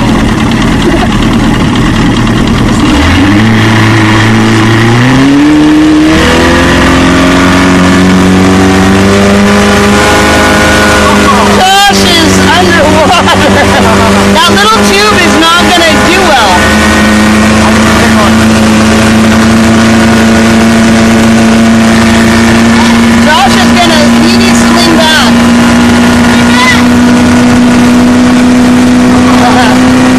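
Boat's outboard motor towing two tubes: it revs up about three seconds in, climbing in pitch for a few seconds, then runs steadily at speed with its pitch slowly creeping higher, over the rush of water and wind.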